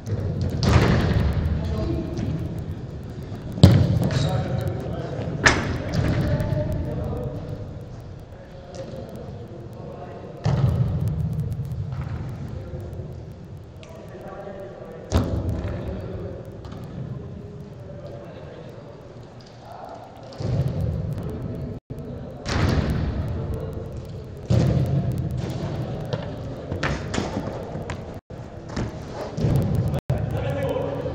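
A football being kicked and rebounding off the pitch's side boards: repeated sharp thuds at irregular intervals, each ringing on in a long echo through a large indoor hall.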